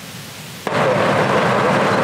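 Road traffic at a roadside: a steady rushing noise of passing vehicles that cuts in sharply about two-thirds of a second in.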